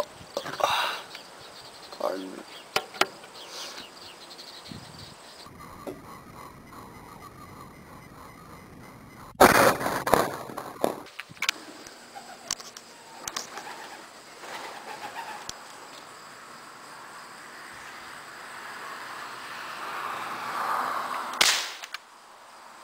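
Benjamin 392 .22 multi-pump air rifle fired once near the end, a single sharp crack. The shot hits the bird. Earlier, about nine seconds in, there is a loud noise lasting about a second.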